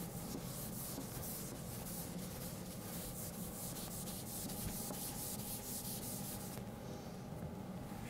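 A felt eraser wiping a chalkboard in quick, repeated rubbing strokes, which stop about a second and a half before the end.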